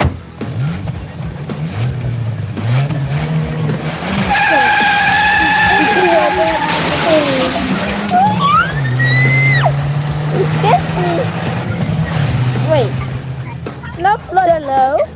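Sound effects of a car engine running and tires skidding from an animated video's soundtrack, heard through a video call.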